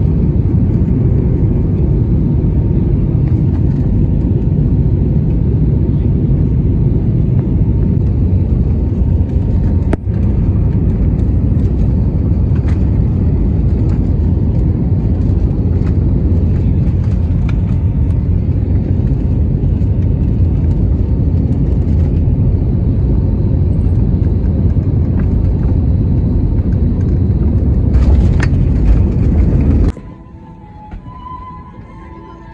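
Loud, steady low rumble of engine and airflow noise heard inside the cabin of an Airbus A320-family airliner, near the wing, as the jet descends and then rolls along the runway after landing. There is a single sharp click about a third of the way in.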